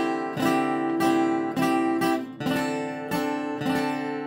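Seagull cutaway acoustic guitar strummed in a steady down-up rhythm on a C-over-D chord, an open D bass string under a C triad. The ringing pitches shift about halfway through.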